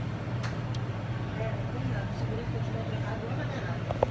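Steady low hum of the supermarket's air conditioning, under the rustle of a phone's microphone rubbing against clothing and hair as it is carried. A light click about half a second in.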